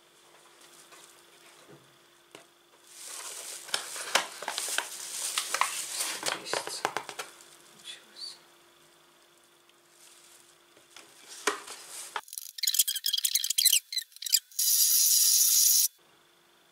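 A spoon scooping flour into a glass bowl on a kitchen scale: soft scraping and light clinks for several seconds. Near the end the sound changes abruptly to harsh bursts and then a loud, steady hiss, the loudest part.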